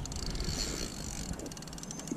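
Faint rapid ticking of a spinning fishing reel being worked against a hooked fish, fading after the first second, over a low rumble of wind on the microphone.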